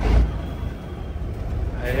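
Old truck's diesel engine heard from inside the cab through a gear change into eighth: a brief louder moment at the start, then the engine sound drops away and builds again toward the end as it is given a little throttle.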